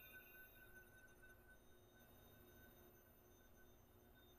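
Near silence: faint room tone with a faint steady hum and a few soft ticks in the first second.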